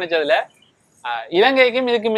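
Conversational speech in Tamil, broken by a short pause about half a second in before talking resumes.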